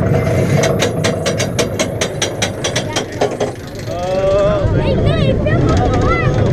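Bobsled roller coaster's anti-rollback ratchet clicking rapidly, several clicks a second, as the car climbs the lift, stopping about three seconds in. Then riders shriek and whoop with rising and falling cries as the sled starts down the track, over a steady rumble of the ride.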